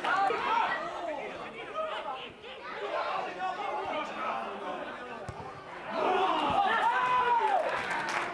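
Several people shouting and calling over one another on the pitch. The voices are louder from about two-thirds of the way in, with one long drawn-out shout.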